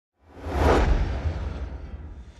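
Logo-intro sound effect: a whoosh that swells quickly and peaks under a second in, with a deep rumble beneath it, then slowly fades.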